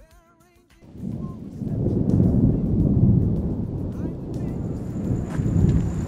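A short musical phrase ends about a second in, then a long rolling rumble of thunder swells, loudest around the middle, and keeps rumbling to the end. A faint steady high whine comes in past halfway.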